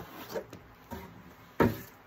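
Cardboard and a vinyl record sleeve rubbing and sliding as a record is pulled from its cardboard mailer and laid on the table, with a short thump near the end.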